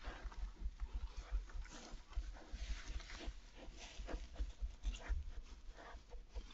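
European badger cub snuffling and rustling about in straw bedding close to the microphone, with irregular short sniffs and low bumps.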